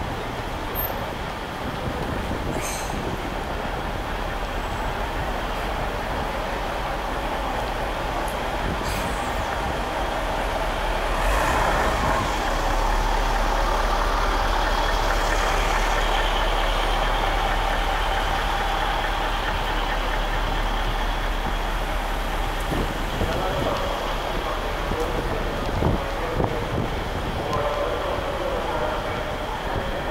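Street ambience: steady road traffic with scattered voices of passers-by. A louder low rumble, like a heavy vehicle going past, runs for about ten seconds in the middle.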